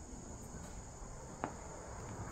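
Crickets trilling steadily in a faint high continuous chorus, with a single short tap about one and a half seconds in.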